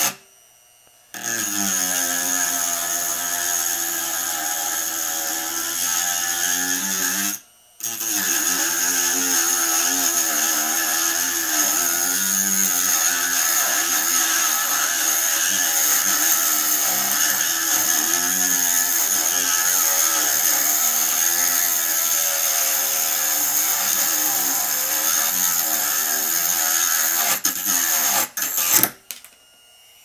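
Proxxon IBS/E rotary tool's 100 W DC motor running at about 5000 rpm while a thin cutoff disc grinds into aluminium bar; the pitch wavers as the disc is pressed in. It stops briefly twice, near the start and about seven seconds in. Near the end a few sharp clicks come and it cuts out, as the brittle cutoff disc breaks.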